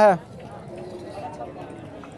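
A man's word ends just as it begins, then a low, uneven background murmur of distant voices and bustle from a crowded outdoor cattle market.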